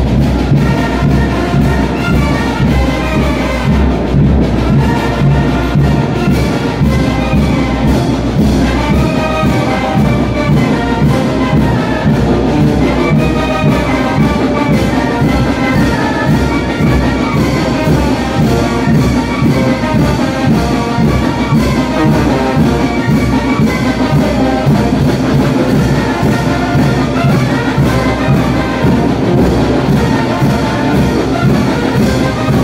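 Live brass band playing a son for the chinelo dance: trumpets and trombones over a steady beat, without a break.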